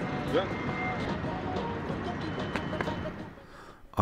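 Steady outdoor background noise with a few faint distant tones and ticks, dropping away shortly before the end.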